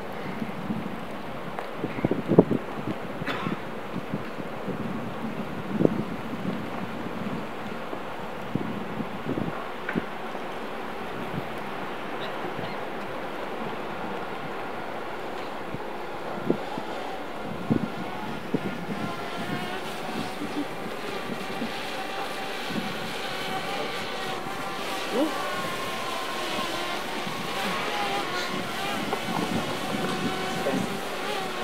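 Outdoor ambience: steady wind noise on the microphone with a few soft knocks, and faint distant voices in the second half.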